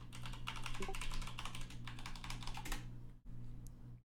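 Computer keyboard typing: a quick run of keystrokes entering a password, which stops about three seconds in.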